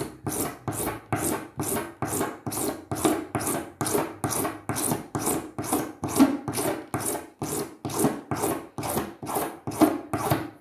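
Hand file rasping a plastic ukulele saddle in steady back-and-forth strokes, about three a second. The saddle's back edge is being filed down to lower the strings' height over the fretboard.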